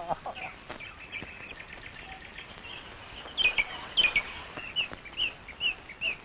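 Birds chirping: a string of short, high calls over a light background hiss, becoming louder and more frequent about halfway through.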